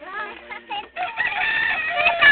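A rooster crowing: one long, held call that starts about halfway through and is still going at the end, after a few shorter calls.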